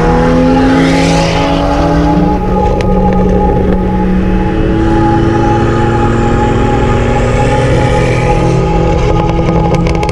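A car engine accelerating under load, its pitch rising slowly over the first couple of seconds and again from about halfway through, with background music underneath.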